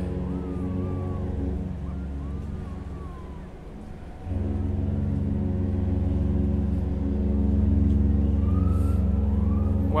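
A steady droning hum made of several pitches. It sinks for a moment about three to four seconds in and then comes back. Faint rising and falling whistle-like tones drift above it a few times.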